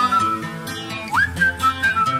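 The whistled hook of a pop song: a melody whistled in short notes, several of them sliding up into place, over the song's backing music with a bass line and beat.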